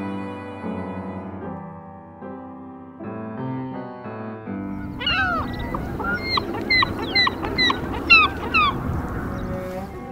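Cello-led string music for the first half. About five seconds in it gives way to a flock of birds calling: many short, repeated honking calls over the steady hiss of breaking surf.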